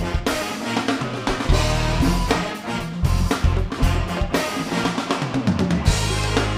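Live band playing: drum kit, bass, electric guitar, congas, trumpet and saxophone. A quick run of drum hits comes in the last second or so.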